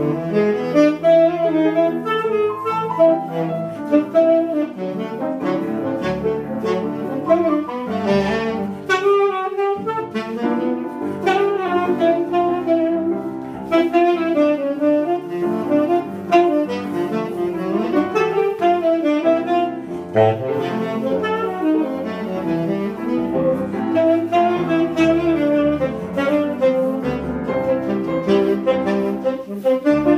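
Jazz saxophone playing a continuous melodic line, with a brief break about nine seconds in, over the lower notes of a grand piano accompaniment.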